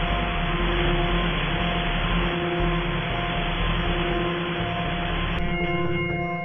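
Electronic ambient soundtrack: a dense hiss-like wash with a low rumble and a few held tones that fade in and out. About five seconds in, the hiss drops away, leaving layered sustained drone tones.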